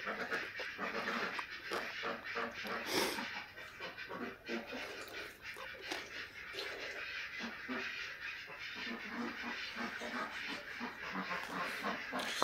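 A duck quacking over and over in the background, with close-up chewing and the small clicks of fingers mixing rice.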